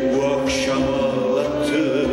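Live Turkish classical music in Kürdi makam: voices, a choir among them, singing a slow melody with gliding, held notes over instrumental accompaniment.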